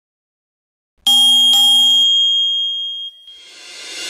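Bell-like notification chime sound effect, struck twice about half a second apart, with one high tone ringing on for about a second. Near the end a whoosh swells up.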